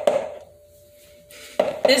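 An egg knocked against the rim of a plastic mixing bowl: a couple of quick sharp taps at the start, the shell not yet giving way.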